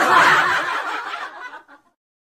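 A person laughing, a short run of chuckling that fades out near the end.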